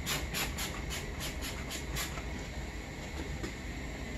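Trigger spray bottle pumped rapidly, each pull a short hiss of foaming cleaner, about four a second, stopping about halfway through.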